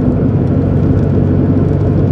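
Steady engine and road noise inside a car cruising at an even speed, a low hum with tyre rumble and no change in pitch.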